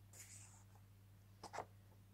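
Near silence with a faint rustle of paper flashcards as the top card is slid off the stack, then two faint ticks about one and a half seconds in, over a steady low hum.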